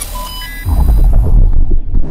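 Logo-reveal sound effect: a few short bright chime-like tones over a hiss, then, under a second in, a loud deep rumbling hit that throbs and carries on.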